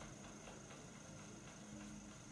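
Near silence: room tone, with a faint steady high-pitched whine.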